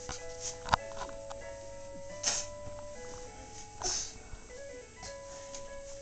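A musical crib toy playing a simple electronic tune of plain held notes, changing note about once a second. A single sharp knock comes just under a second in, and two short soft noisy bursts follow later.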